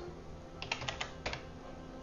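Computer keyboard typing: a quick run of keystrokes starting about half a second in and ending just past a second.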